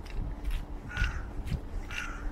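A bird calls twice, once about a second in and again at the end, over the walker's steady footsteps.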